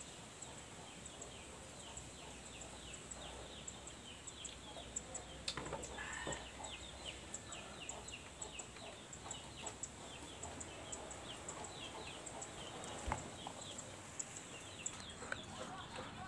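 Faint chirping of birds: short, falling chirps repeated several times a second, with a sharp click about thirteen seconds in.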